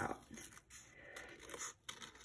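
Scissors cutting through folded paper in faint, quiet snips, a little louder about half a second in and again near the end.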